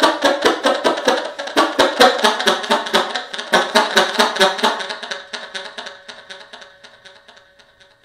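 Cannonball tenor saxophone playing a fast improvised run of short notes, each with a sharp click, loud at first, then trailing off over the last few seconds as the playing stops, one note hanging on faintly.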